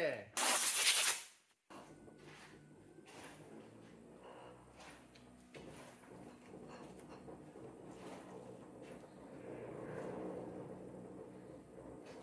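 A brief loud hiss about half a second in, then a faint low hum from the stone lathe as it slowly turns the heavy granite blank.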